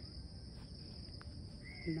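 Faint, steady high-pitched drone of insects, with a short higher call near the end.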